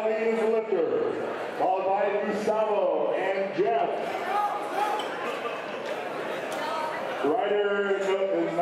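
Men's voices shouting encouragement in a large hall, in several loud, drawn-out yells with short gaps between them.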